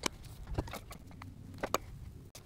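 A few light, sharp clicks and taps of a metal screwdriver and rack-mount bracket hardware being handled and set down on a desk: a click at the start, another about half a second in, and a quick pair near the end.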